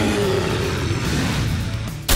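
A loud, rough, noisy sound effect, with a falling low growl near its start, played over steady background music.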